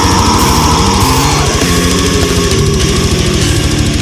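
Brutal death metal: very fast, evenly spaced drum strikes under thick, heavily distorted guitars, with a high note gliding down in the first second and a half.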